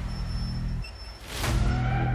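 Tense background music: a low sustained drone that cuts out just before a second in, then a quick whoosh about a second and a half in, after which the drone returns.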